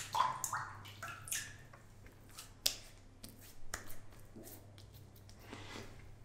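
Faint, scattered light clicks and small wet squelches from wet-shaving gear being handled up close, over a low steady hum.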